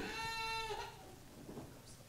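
A faint, steady ringing tone with overtones that holds one pitch and fades out after about three quarters of a second.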